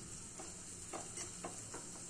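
Metal spoon stirring a garlic and cumin tadka in hot oil in a small tadka pan: a faint, steady sizzle with several light clicks of the spoon against the pan.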